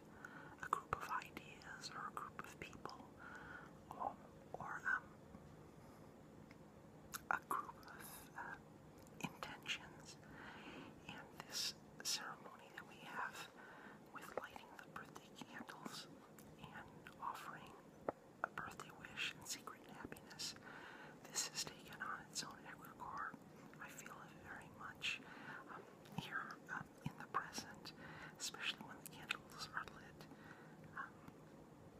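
Soft, close whispering in short broken phrases, with many sharp wet mouth clicks and smacks scattered throughout.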